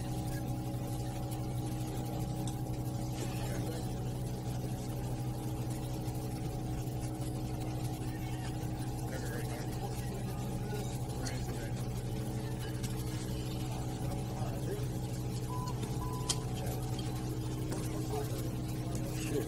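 A steady low hum made of several constant tones, with a faint short click near the end.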